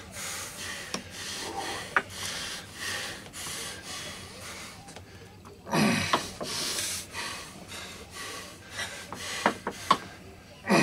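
Arm wrestlers straining in a locked hold: repeated hard breaths and exhales, with a loud grunt about six seconds in and a few sharp clicks or knocks from the table.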